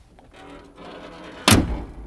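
A faint background sound, then one loud slam about three-quarters of the way through that dies away over about half a second.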